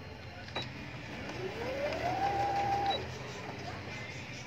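Brother domestic sewing machine's motor speeding up with a rising whine about a second in, running steadily at speed for under a second, then stopping suddenly. A single sharp click comes about half a second in.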